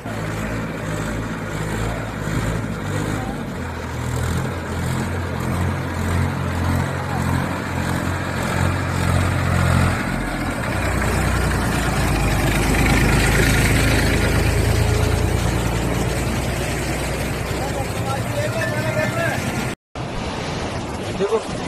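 Diesel engine of a Massey Ferguson tractor running steadily as the tractor drives through deep floodwater; about halfway through its note drops lower and grows louder.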